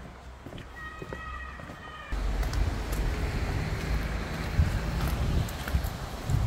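Footsteps on a stone-paved path, with a brief high call about a second in. From about two seconds in, wind buffets the microphone with an uneven low rumble.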